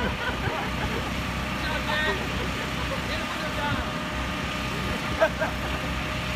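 Electric air blower of an inflatable jousting arena running with a steady low drone and faint hum, with brief laughter and a few words over it.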